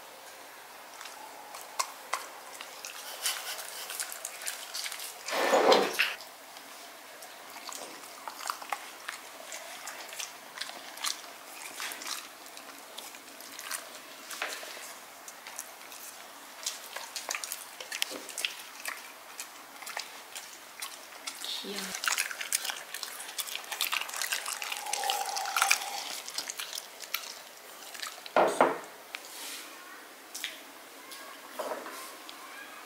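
A dog chewing and smacking on small pieces of food taken from a hand: a steady run of small wet clicks. Two brief louder sounds break in, about six seconds in and near the end.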